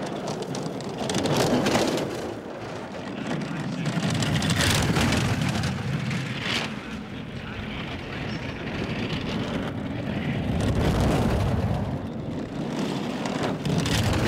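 Four-man bobsled running down the ice track, its runners making a continuous rumble that swells and fades several times as the sled passes by.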